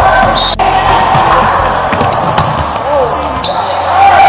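A basketball bouncing on a hardwood gym floor during play, with short high squeaks and players' and spectators' voices.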